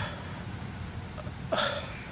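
A single short, sharp vocal sound, like a hiccup or gasp, about one and a half seconds in, over a steady background hiss.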